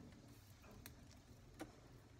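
Near silence with two faint clicks, about a second in and near the end, from hands working strawberry plants and roots loose in a plastic pot of soil.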